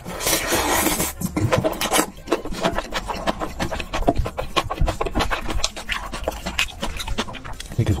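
Close-miked eating of black bean noodles: a hissing slurp for about the first second, then wet chewing and lip smacking with many quick clicks.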